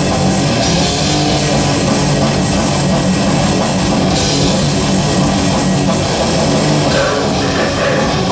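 Live heavy metal band playing at full volume: distorted electric guitars, bass and a drum kit in a steady, dense wall of sound.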